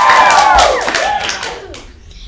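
Children cheering with a long, high, held 'woo' over hand clapping, fading out near the end.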